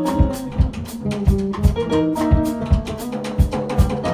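Jazz trio playing live: electric keyboard, electric bass guitar and drum kit, with cymbals and drums struck on a steady beat under the keyboard's melody and chords.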